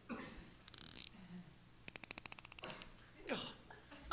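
Clockwork wind-up key being turned: a fast, even run of ratchet clicks, about fifteen a second, lasting about a second midway.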